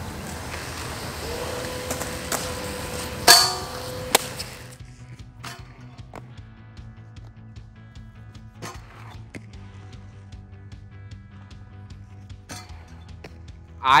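Inline skate wheels rolling on concrete, then a sharp, loud clack about three seconds in as the skates land on a metal practice rail, with a smaller knock about a second later. After that the rolling stops and background music plays with a few faint clicks.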